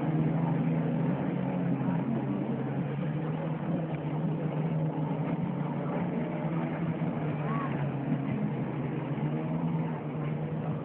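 A boat's motor running steadily, a low, even hum with no change in speed.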